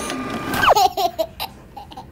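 A young girl's short laugh, one sharp downward swoop in pitch about two-thirds of a second in, followed by a few brief voiced notes.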